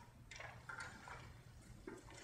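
A few soft, short notes from a violin and classical guitar duo, spaced out with near silence between them, one briefly held.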